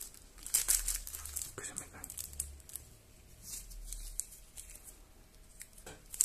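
Plastic wrapping on a deck of trading cards crinkling in irregular small crackles as gloved fingers pick at it and work a scissors tip into a small hole in it.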